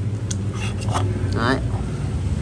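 A man's short spoken word over a steady low background hum.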